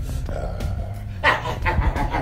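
A dog barking in a quick run of short barks that starts a little over a second in.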